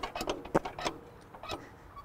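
Irregular light clicks and knocks from the metal parts of an old tractor, its springy seat and steering, as someone shifts on it, with a little soft laughter.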